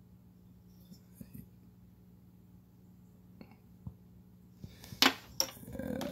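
Hands handling glass light bulbs and a plastic blister pack. There are a few faint clicks at first, then in the last second a run of sharp clinks and rustling as the packaged bulb is picked up, over a faint low hum.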